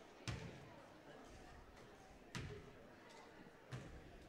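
A basketball bouncing on a hardwood gym floor: three single bounces, the second about two seconds after the first and the third about a second and a half later, over a faint murmur of voices.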